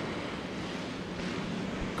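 A pack of dirt-track Hobby Stock race cars running together at speed, heard as a steady, rushing engine drone.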